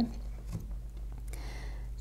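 Quiet pause with a steady low hum, a faint tap about a quarter of the way in and a light rustle near the end as a tarot card deck is picked up off the table.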